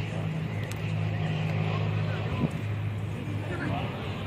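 A low engine running steadily, with a brief thump a little past halfway.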